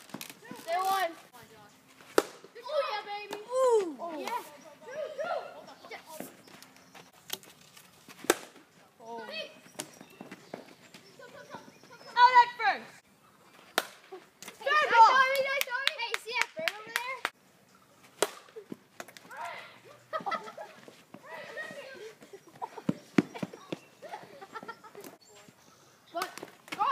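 Players' voices calling out and shouting in short bursts across an open yard during a wiffle ball game, with several sharp knocks scattered between them.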